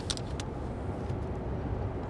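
Steady low rumble of vehicle background noise, like a car heard from inside while moving, with a couple of faint clicks near the start.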